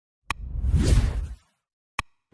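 Sound effects for an on-screen subscribe-and-like animation: a short mouse-click sound, then a whoosh that swells and fades over about a second, and another click at the end.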